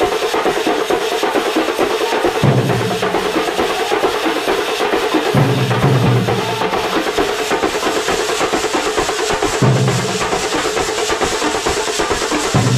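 Kerala thambolam drum band playing a loud, fast, dense rhythm on large drums, with a low droning tone that comes in for a second or so every few seconds.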